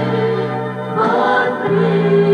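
A small mixed vocal group of men and women singing a worship song in harmony, accompanied on grand piano, with low notes held under the voices.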